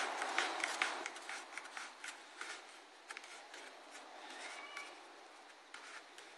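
Hands working a Kydex cheek rest on a rubber-overmolded rifle stock while its mounting bolts are tightened: light clicks and rubbing of plastic on rubber, dense at first and tapering off to near quiet.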